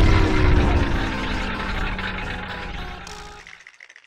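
Cartoon power-down sound effect: a low rumble with several tones sliding downward, fading out steadily and dying to silence shortly before the end.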